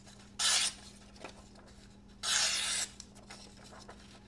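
A very sharp Spyderco Manix 2 folding knife with a CPM Cruwear blade slicing through a sheet of paper twice: a short hissing cut about half a second in, and a longer one just after the two-second mark. The edge is as it came from the factory, not sharpened or stropped.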